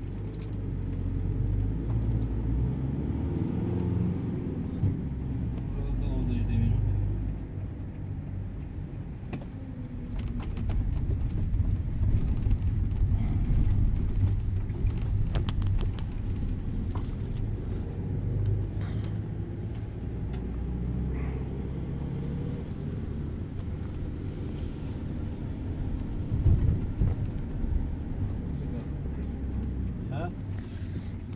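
Low rumble of a tram running along its rails, heard from inside the passenger car, swelling and easing as it speeds up and slows.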